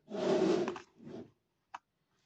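Hands handling a small plastic toy kitchen set: rubbing and scraping of plastic for about a second, a shorter scrape just after, then a single sharp plastic click near the end.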